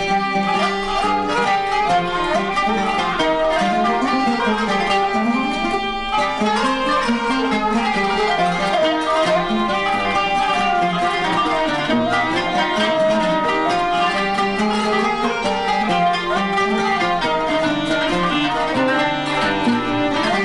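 Turkish classical music ensemble of bowed and plucked strings playing the instrumental introduction of a song in makam Kürdili Hicazkâr, in the limping nine-beat aksak rhythm.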